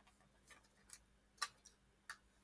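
Near silence with four faint, short ticks spread across two seconds, from a trading card being handled in the fingers.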